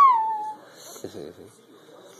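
A toddler's high-pitched squealing call, rising and then falling in pitch, ending about half a second in. A faint, short vocal sound follows about a second in.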